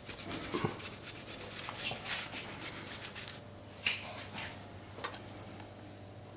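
Truffle being shaved on a handheld truffle slicer, a quick run of rasping strokes that stops about three and a half seconds in. A few light knocks follow.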